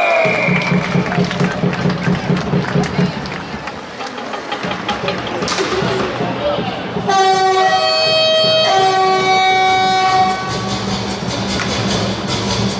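Ice arena goal horn sounding for a goal: a low pulsing blast at the start, then about seven seconds in a run of long held tones that change pitch twice.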